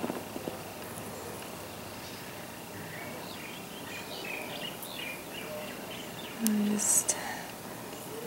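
Quiet room ambience with a faint steady high whine, in which birds outside chirp several times in short calls in the middle. Near the end comes a brief murmur from a voice with a short hiss after it.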